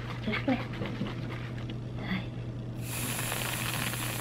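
Aerosol whipped-cream can spraying with a steady hiss that starts about three quarters of the way in.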